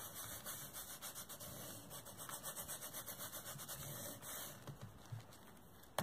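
Ultra-fine glitter being burnished by hand onto double-sided adhesive tape on a card: a faint, quick back-and-forth rubbing that eases off about four and a half seconds in.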